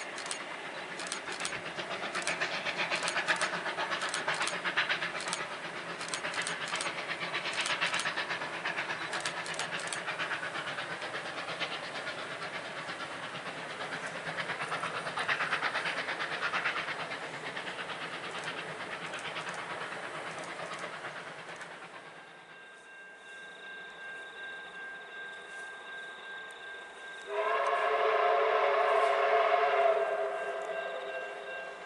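Victorian Railways R-class 4-6-4 steam locomotive R711 hauling a passenger train: a steady rush of running noise with repeated sharp clicks, easing after about two-thirds of the way. Then, quieter, a faint steady tone, and near the end a loud steam whistle sounding several pitches at once, held steadily.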